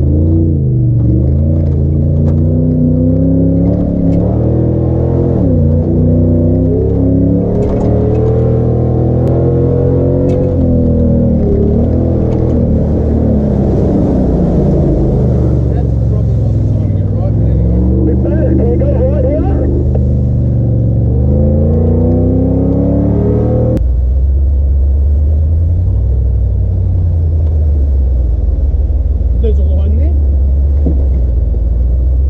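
LS1 V8 engine of a Nissan GQ Patrol rally truck, its revs rising and falling as it drives over sand and rocks. Water splashes over the truck about halfway through. Near the end the sound changes abruptly to a lower, steadier engine note.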